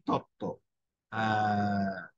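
A man's voice: two short syllables, then a long held 'ehh' hesitation sound on one steady pitch, a filler between phrases of a spoken lecture.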